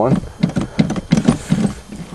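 Starter cranking the cold four-barrel 305 Chevy V8 of a 1983 Pontiac Parisienne, a quick, even chugging of several beats a second. The engine turns over without firing, and the owner fears the fuel tank has been emptied.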